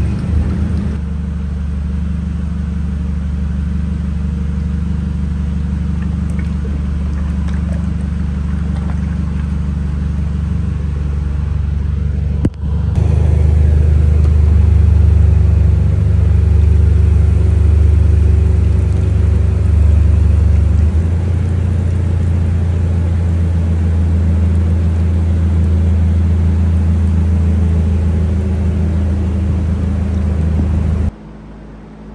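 A steady, loud, low machine drone with a constant hum. It breaks off sharply about twelve seconds in and comes back louder, and its lowest note drops about eight seconds later.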